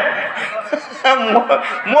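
A man's voice chuckling, with a short spoken word near the end.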